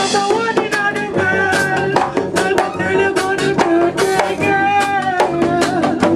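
Live band music: a guitar and a drum kit playing a steady beat under a melody line.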